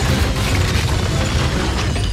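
Crash sound effects of a ship smashing up through a floor: a continuous rumbling, cracking din with music underneath.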